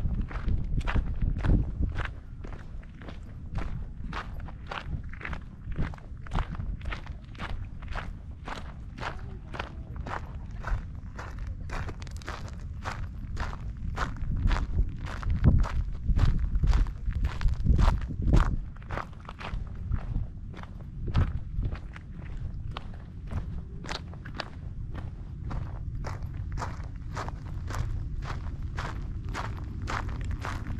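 Footsteps of a hiker walking at a steady pace on a trail, about two steps a second, over a low rumble.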